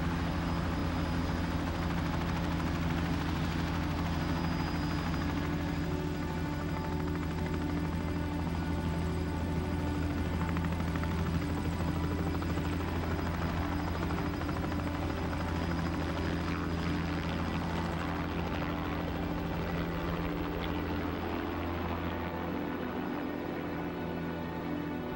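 A helicopter running steadily, its rotor and engine giving a continuous low hum that drops away near the end.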